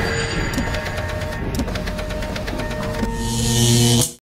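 Sound design for an animated logo intro: held tones under a run of rapid mechanical ticking, swelling into a loud whoosh near the end.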